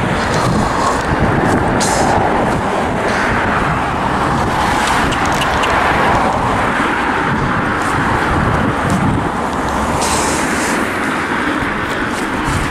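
Steady road traffic noise from cars passing on a main road, a continuous rush that swells gently as vehicles go by.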